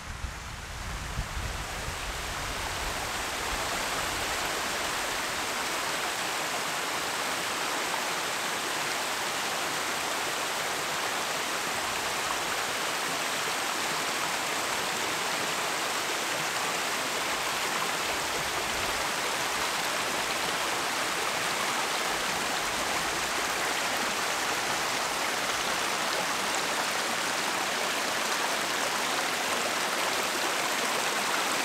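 Shallow mountain stream cascading over rocks and stones: a steady rush of water that swells in over the first few seconds and then holds even. Wind rumbles on the microphone for the first second or two.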